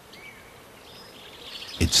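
Quiet forest ambience with a few faint, short bird chirps.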